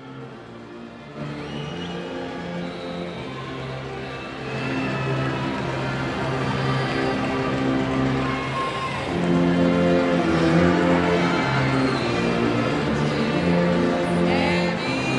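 A school concert band plays the alma mater in slow, sustained chords. It gets louder about four and a half seconds in and swells again near nine seconds.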